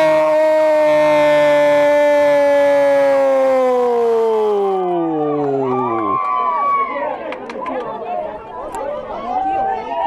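A football narrator's long, held goal cry, one sustained note that drops in pitch and dies away about six seconds in. After it comes a jumble of overlapping voices and shouts.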